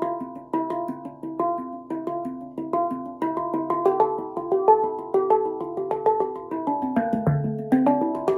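Handpan struck with the fingers, playing a scale-pattern practice exercise: single notes, each ringing on after the strike, at about two notes a second, quickening from about three seconds in.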